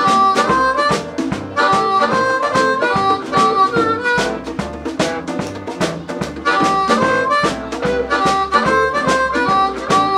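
Blues harmonica solo, the harp cupped against a vocal microphone and amplified, over a live band of drums, electric guitar, bass and piano. The same bright run of high notes is played twice.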